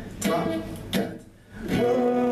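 Acoustic guitar strummed: two short strums, a brief lull, then chords ringing on steadily near the end.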